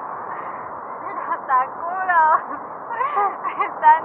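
A person's voice in several short, wavering non-word calls, the loudest near the end, over a steady hiss.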